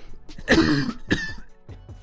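A person coughing twice, once about half a second in and again just after a second, over background music.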